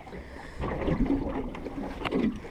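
Low, even wind and water noise aboard a small aluminium boat drifting on a calm sea, with a faint murmur underneath.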